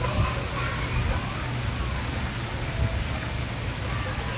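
Wind buffeting a phone's microphone outdoors: a steady low rumble with a hiss over it.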